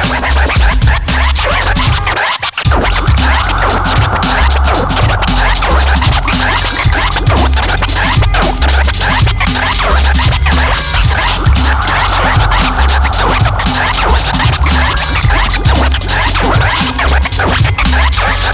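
Instrumental hip-hop beat with heavy drums and bass, with turntable scratching over it. The bass drops out for a moment about two seconds in.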